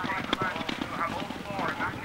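Horse galloping on grass turf, a rapid run of hoofbeats, with a voice talking over it.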